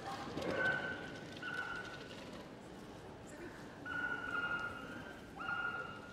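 Five short, high, steady calls, each about half a second long, over faint hall ambience.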